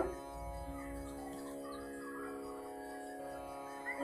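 Quiet instrumental drone: a chord of several notes held steady and unchanging, with a lower note joining about half a second in.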